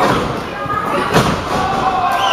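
Heavy thuds of wrestlers hitting the ring: a small one at the start and a loud one about a second in, over crowd voices.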